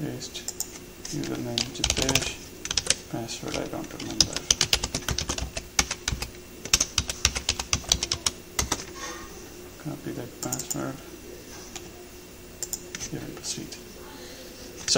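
Computer keyboard typing in quick runs of keystrokes, densest in the middle and thinning out near the end.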